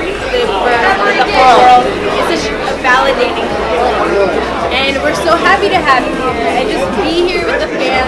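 People talking, with chatter from others around them in a busy hall.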